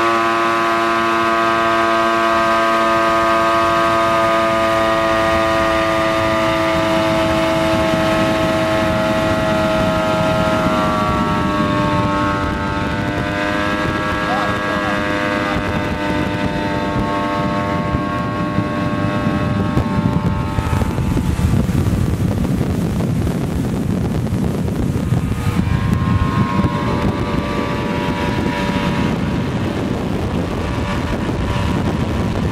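Mercury 240 hp V6 engine of a 2002 Sea-Doo Islandia jet-drive deck boat, pulling hard at high throttle after a fast run-up: a steady, high engine note that drops a little in pitch about eleven seconds in. Over the second half the engine note sinks under rushing wind and water noise.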